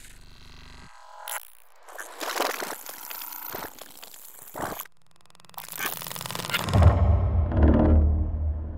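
Electroacoustic music made of abstract, abruptly edited sound textures. A low hum cuts off about a second in. Hissing, clicking noise then comes and goes in sharply cut sections, with a brief gap of silence about five seconds in. A deep low rumble swells in near the end and is the loudest part.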